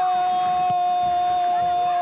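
A football TV commentator's long goal cry of "gol", one high note held steady and loud without a break.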